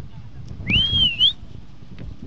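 A person whistling once, a bit over half a second long, about halfway through. The pitch rises, dips slightly and rises again to finish high.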